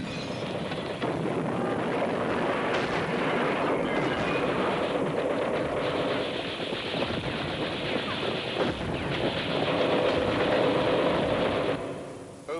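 Continuous battle noise on a war-newsreel soundtrack: a dense, steady rattle of gunfire over a rumbling din.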